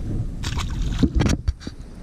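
A small largemouth bass dropped back into a pond, hitting the water with a splash, followed by a few short splashes and knocks over the next second.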